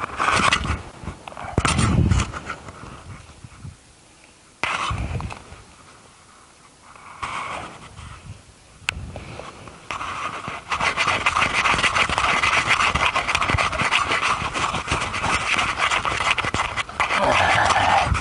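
Hand saw cutting into a pine log with quick back-and-forth strokes, starting about ten seconds in. Before that there are scattered knocks and rustles.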